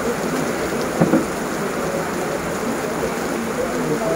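Heavy rain falling steadily on trees, grass and paving, with one brief thump about a second in.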